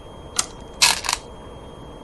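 Go stones set down on a wooden Go board: a light click, then a louder clack with a brief rattle about a second in.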